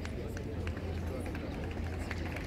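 Marching feet of a drill squad striking a tarmac parade ground, heard as a run of short knocks over a low rumble.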